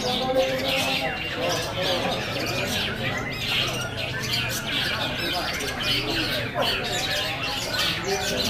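Long-tailed shrike (cendet) singing a continuous, varied stream of harsh squawks and short chirps, with other birds and people talking in the background.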